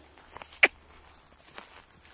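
Footsteps on dry, grassy earth: a few light, separate crunches, with one sharper click a little over half a second in.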